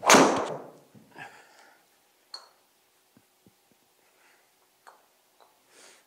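Golf driver striking a ball off a hitting mat, with the ball hitting the simulator's impact screen: a loud crack at the start that dies away over about a second. A few faint taps follow.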